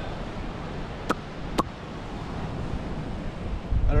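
Sea surf washing onto a sandy beach, with wind on the microphone, as a steady rushing noise. Two sharp clicks come about a second and a second and a half in.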